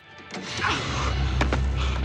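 Film soundtrack: a low droning score swells in, with two sharp clicks about one and a half seconds in as a trailer door is forced open.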